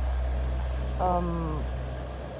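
Heavy diesel engine idling with a steady low hum, with a short spoken syllable about a second in.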